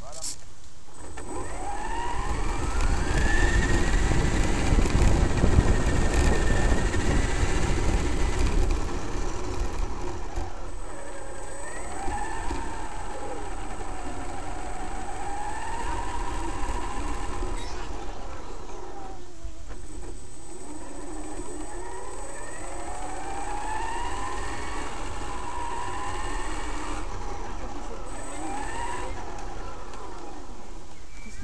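Electric motor and drivetrain of a Traxxas X-Maxx RC monster truck, heard through its onboard camera: a whine that rises and falls in pitch as the throttle changes, several times. A low rumble of the tyres on gravel is loudest in the first several seconds.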